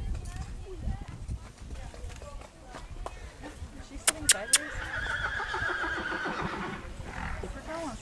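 A horse whinnying: one quavering call of about two seconds, starting just after three sharp clicks about four seconds in.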